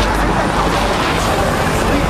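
Street traffic noise with a car driving in, over indistinct voices in the background.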